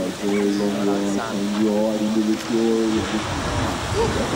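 A voice singing long held notes that step between a few pitches, breaking off about three seconds in. A rushing noise follows.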